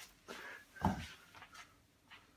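A cucumber set down on a wooden floor: one soft low thud about a second in, with faint small handling noises around it.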